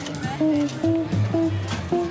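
Instrumental background music: a plucked guitar plays a line of short notes, changing about every half second, over a low bass.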